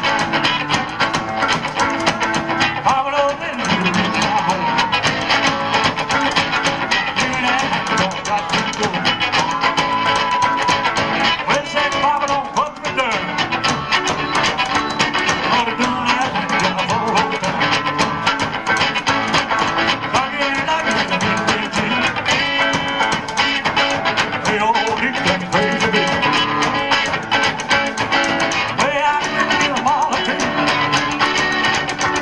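Live rockabilly band playing a song: electric guitar, upright bass and drums.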